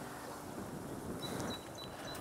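Quiet outdoor background, a faint even hiss, with a few short, high-pitched chirps in the second half.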